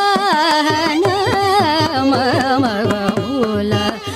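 Carnatic music in raga Mayamalavagowla: a melody with fast swaying gamaka ornaments, sung by a female voice, over regular percussion strokes.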